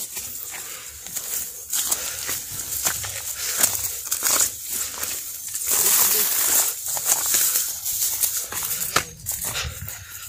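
Dry grass and brush rustling and crackling as people push through it and scramble up a scrubby hillside on foot, with many short crackles and the loudest rustling around the middle.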